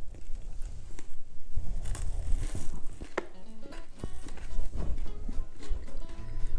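A man biting into and chewing a Reese's Big Cup peanut butter cup filled with crunchy Reese's Puffs cereal, with a few sharp crunches among the chewing, over background music.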